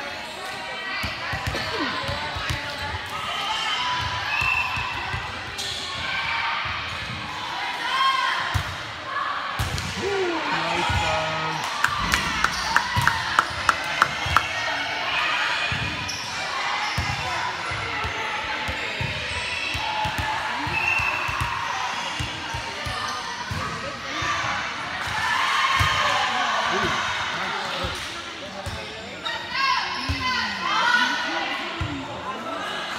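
Volleyball being played in a large echoing gym: repeated thuds of the ball being hit and hitting the floor under players' chatter and calls. Just past the middle comes a quick run of about eight sharp smacks.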